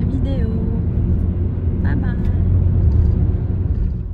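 Steady low road and engine rumble inside the cabin of a moving car, with a few words of a woman's voice over it.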